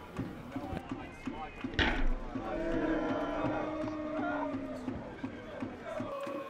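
Pitch-side sound of a football match: a football kicked with one sharp thud about two seconds in, followed by several seconds of drawn-out shouts from players and spectators.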